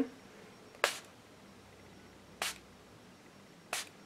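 Hard Candy Fast & Fabulous makeup setting spray, a hand-pumped mist bottle, sprayed three times: three short hisses about a second and a half apart.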